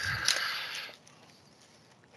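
Brief rustling from a sealed trading-card box and its wrapping being handled, fading out within about the first second.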